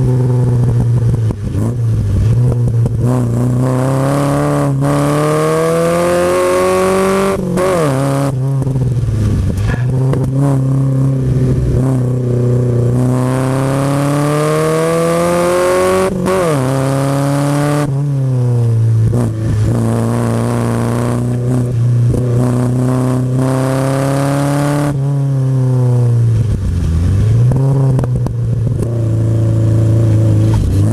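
1959 Triumph TR3A's four-cylinder engine, heard from the open cockpit, pulling hard. Its pitch climbs under acceleration and then drops sharply at gear changes or lifts, several times over.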